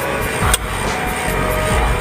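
Steady engine and road noise inside a moving truck's cab, with music playing in the background and a single click about half a second in.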